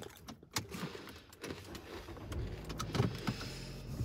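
Quiet car cabin: a few soft clicks and small handling noises over a low steady hum that grows stronger about halfway through.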